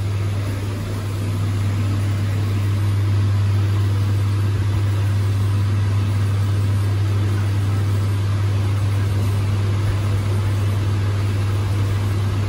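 Schindler inclined traction lift running, a steady low hum with rumble that builds slightly over the first few seconds and then holds even.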